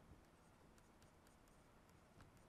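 Faint taps and scratches of a stylus writing on a tablet screen, a scattering of light ticks over near-silent room tone.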